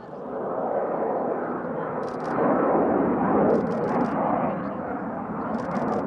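Jet noise from an F/A-18C Hornet's twin General Electric F404 turbofans as it maneuvers overhead. The noise swells about two and a half seconds in and eases toward the end, with a few faint, sharp clicks.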